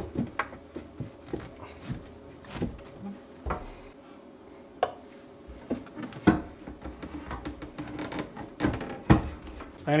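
Black ABS plastic drain pipe and fittings being handled and pushed together under a sink as the joints are glued up: scattered light plastic knocks and clicks, some sharper than others, with short quiet gaps between.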